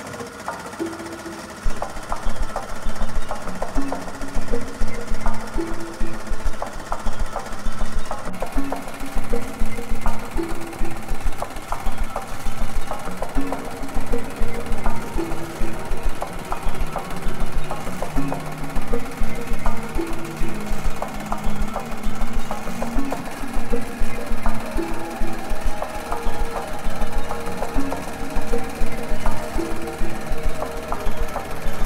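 Music track with a stepping melody over a rapid, steady clatter of an embroidery machine's needle stitching into fabric. The whole gets louder about a second and a half in.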